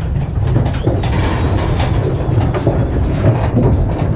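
Cattle hooves clattering and knocking on the metal floor of a cattle trailer as the animals file in one after another, over a steady low rumble.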